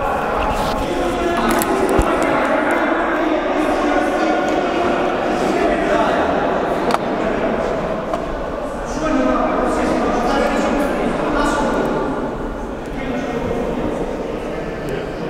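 Many overlapping, indistinct voices of players and people at the courtside talking in a large, echoing sports hall, with a couple of sharp knocks.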